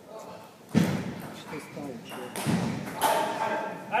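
Two dull thumps echoing in a large hall, a hard one about a second in and a softer one about halfway through, with men's voices talking.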